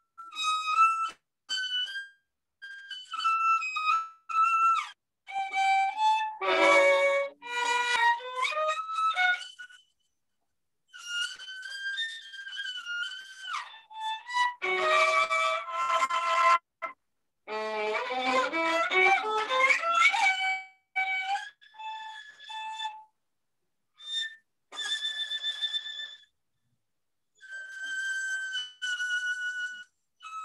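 Solo violin played with long, connected legato bow strokes, in phrases of held and gliding notes with passages of several notes sounding together. The playing is in good tune. It keeps cutting out abruptly into silence, as over a video-call connection.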